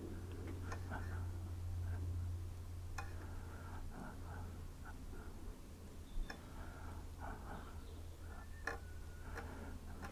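Faint, quiet room sound: a watercolour brush working on paper in small soft strokes, with a few faint ticks over a steady low hum.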